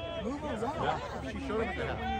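Several people talking at once, overlapping voices with no clear words: outdoor sideline chatter.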